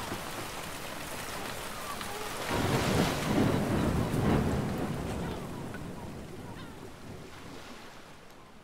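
Storm sound effects on the song's recording: a steady rain-like hiss, with a deep rumble swelling about two and a half seconds in and dying away, the whole then slowly fading out.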